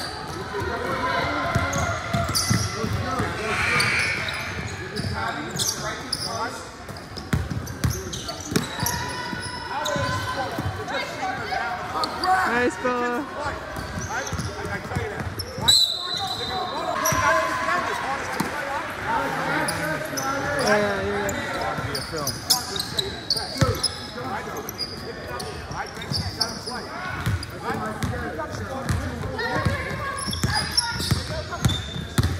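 Basketball game on a hardwood gym floor: the ball bouncing as it is dribbled, with short knocks and footfalls, over indistinct shouting from players and onlookers.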